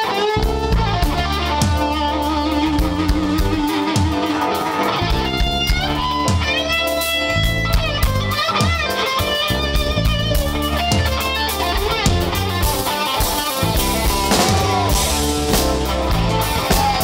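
Rock band music: an electric guitar plays a lead line with bending, wavering notes over bass guitar and drum kit.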